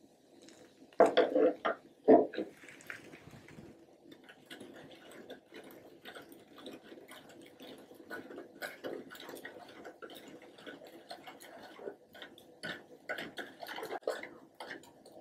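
Metal spoon tipping baking soda into a plastic cup of soda, with a few loud knocks a little after one and two seconds in, then the spoon stirring and scraping against the plastic cup in quick, light, irregular clicks as the soda fizzes and foams.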